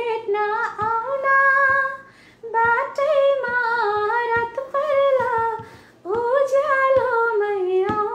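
A woman singing a Nepali song unaccompanied, with long held, wavering notes in three phrases separated by short breaths.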